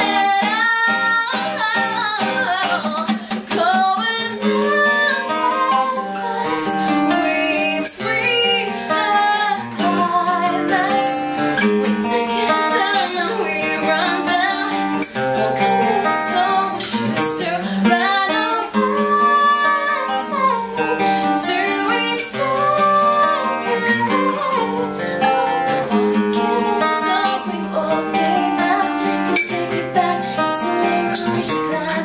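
A woman singing with acoustic guitar accompaniment, her voice sliding through ornamented lines over the strummed and picked chords.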